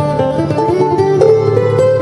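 Steel-string acoustic guitar picked at a quick pace, a run of short melody notes moving over held bass notes.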